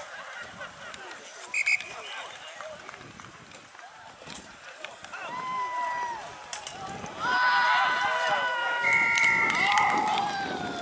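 Referee's whistle: two very short, sharp blasts about a second and a half in. From about five seconds in come long, held shouts from voices on or around the field, loudest in the last three seconds.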